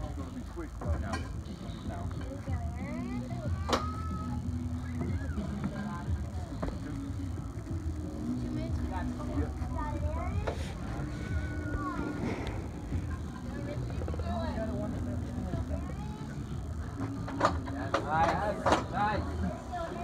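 Background voices talking and music playing over a steady low rumble of wind on the microphone, with a few sharp knocks near the end.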